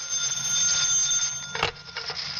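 An old desk telephone's bell ringing, a studio sound effect: one ring of about a second and a half, cut off by a sharp click.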